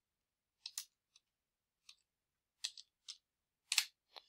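About eight short, sharp computer keyboard keystrokes in uneven groups, typing a division into a calculator, with silence between them.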